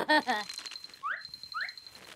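Cartoon sound effects: a brief burst of a character's wordless vocalizing, then a thin steady high tone with two quick rising chirps about half a second apart.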